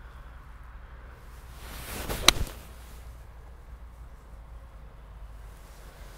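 Golf iron (Cobra King Speedzone) swung at a ball: a short swish builds up, then one sharp click as the clubface strikes the ball about two seconds in, a solid strike. Otherwise faint low background noise.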